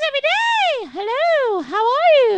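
A woman's voice doing vocal sirens: smooth, unbroken swoops that climb from a low chest note to a high peak and slide back down, about three in a row. It is an exercise for lifting a speaking voice that sits too low.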